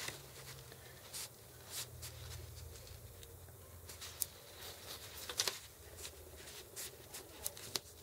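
Faint rustling of paper and twine being handled, with a few light scattered ticks and taps.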